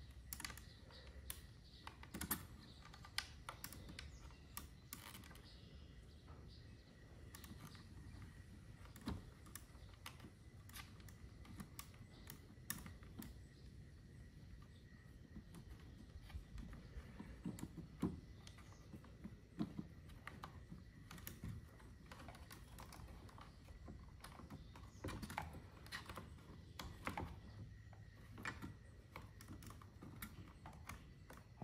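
Faint, irregular clicks and taps of hands handling wires and the plastic head housing of a MotorGuide trolling motor while feeding a wire through it.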